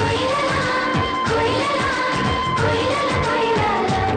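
Kannada film song: a sung melody over a steady beat of low drum strokes that drop in pitch.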